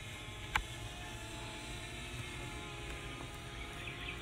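Faint, steady outdoor background noise: a low rumble with a single sharp click about half a second in.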